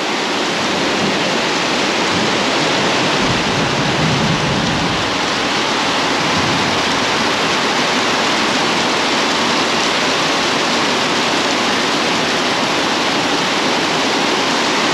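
Torrential tropical rain falling steadily: a loud, dense, unbroken hiss of rain on foliage and the patio roof.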